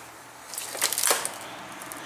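A few short clicks and rustles of handling between about half a second and a second in, over a faint steady room background.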